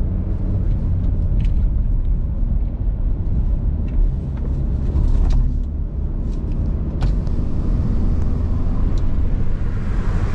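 Car cabin noise while driving: a steady low rumble of the engine and tyres on the road, with a few faint clicks, the sharpest about seven seconds in.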